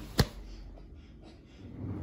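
A single sharp click about a fifth of a second in, followed by quiet room tone.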